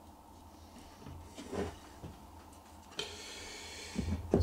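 Hardwood bongossi strips being handled and slid against each other. A short scuff comes about one and a half seconds in. About three seconds in, a sudden scraping hiss lasts about a second as a strip slides into place easily.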